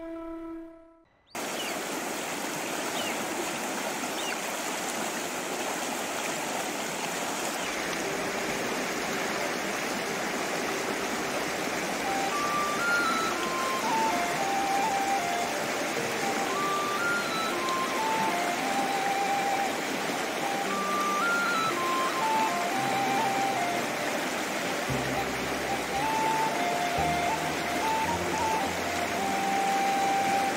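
Shallow mountain river rushing steadily over stones, starting about a second in. Soft background music of sparse, short melodic notes plays over the water, joined by low held tones near the end.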